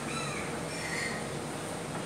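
Dry-erase marker squeaking faintly on a whiteboard while writing: a few short, thin squeaks near the start and about a second in, over a steady background hum.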